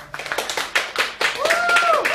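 A few people clapping hands right after a sung song ends, the claps irregular and growing louder. Near the end a voice calls out on one held note that rises in and drops away.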